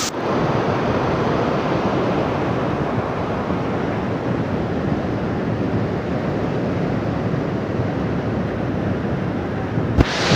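River in flood: a torrent of muddy water carrying mud, stones and sand, making a steady rushing noise.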